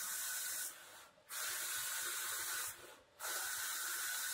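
Roland SP-540V VersaCAMM eco-solvent printer/cutter printing alignment marks: a steady whirring hiss with a faint whine, in runs of about two seconds that stop briefly about a second in and again near three seconds, as the print-head carriage makes its passes.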